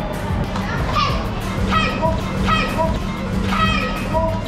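Young spectators' voices shouting short, repeated calls about once a second, cheering on a karate kumite bout, over background music.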